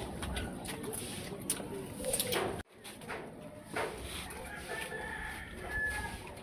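Birds calling over faint outdoor background noise. The sound breaks off abruptly a little under halfway through, and a thin, high, steady tone is heard near the end.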